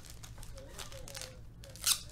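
Trading-card pack packaging crinkling as it is handled, with one sharp, louder crinkle near the end over a low steady hum.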